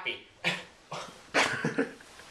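A young man laughing in several short bursts, a break-up of helpless laughter.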